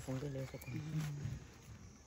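A person's voice: a few drawn-out vocal sounds at a fairly steady pitch, fading out about a second and a half in.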